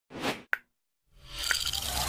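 Animated-logo sound effects: a brief rush of noise, then a short sharp pop about half a second in. After a short silence, a rising noise swells and a second pop sounds about a second and a half in.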